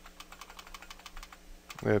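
Computer keyboard: a quick run of key taps, the left arrow key pressed repeatedly to step the cursor back along a typed command line. A short spoken word comes in near the end.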